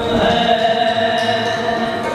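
Sikh kirtan: a devotional hymn sung in long held notes over a steady sustained accompaniment.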